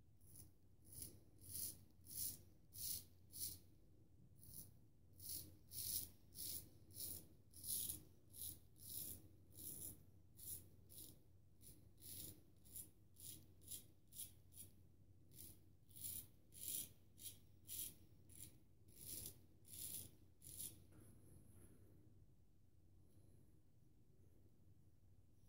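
A Magnetic Silver Steel 13/16" full-hollow straight razor scraping through stubble on a lathered face, shaving against the grain in short, quick strokes, about two a second. The strokes stop about 21 seconds in.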